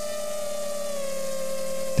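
Mini racing quadcopter's brushless motors and three-blade props in flight, giving a steady high whine that dips slightly in pitch about a second in as the throttle eases.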